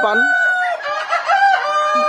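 Tiger chicken roosters crowing among a flock of hens: one long held crow in the first part, then another crow.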